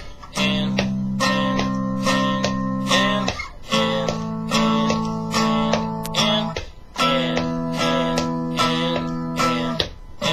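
Electric guitar playing a string-bending exercise: picked notes bent up in pitch and released back down over steady lower notes. The phrase repeats three times, each about three and a half seconds long with a short break between.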